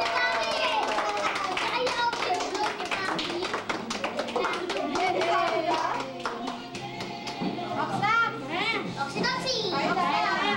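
A group of children and adults clapping and talking together around a party table, with high excited children's voices near the end.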